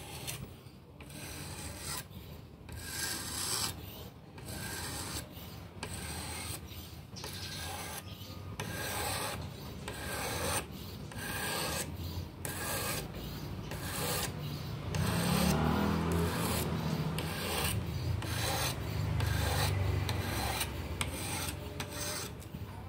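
An 800-grit whetstone on a guided-rod knife sharpener being stroked along the edge of a clamped folding knife blade: rhythmic scraping strokes, a little over one a second. About two-thirds of the way in, a low rumble joins and becomes the loudest sound.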